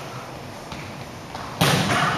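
Gymnasium room noise during a volleyball game, a low even murmur, then about 1.6 s in a sudden, much louder burst of noise.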